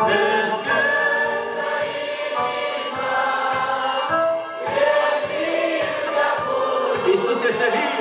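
Church praise group singing a hymn in several voices, with instrumental accompaniment keeping a steady beat.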